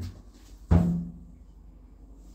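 A light knock, then about two-thirds of a second in a louder hollow thump that leaves a short low ring.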